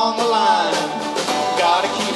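Live band music: singing with strummed acoustic guitar and snare drum, in a 1940s swing-style song.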